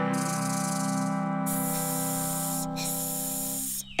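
Three long "sss" hisses like a snake's, each about a second, over a steady held music chord; both stop shortly before the end.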